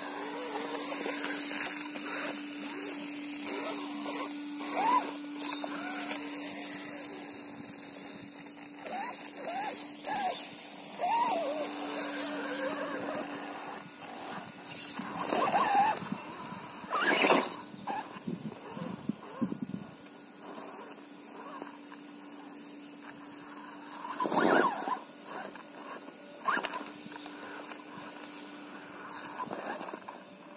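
An Axial Wraith RC rock crawler's electric motor and gears whining as it crawls over rock, with scrapes and knocks from its tyres and chassis and a few louder knocks. Short high squeaks come and go in the first half.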